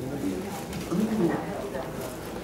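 Indistinct speech: a low voice murmuring short phrases about half a second and a second in.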